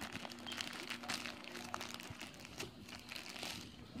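Plastic wrappers of pantiliner packs crinkling and rustling as they are handled and shifted in a box, in a run of small irregular crackles.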